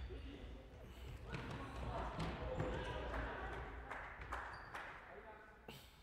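Futsal ball being kicked and bouncing on a wooden sports-hall floor, with a few sharp knocks, while players on court shout to each other between about one and five seconds in.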